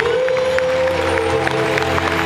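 Live band music with a female singer holding one long note that swoops up at the start and slides down near the end, over scattered audience clapping.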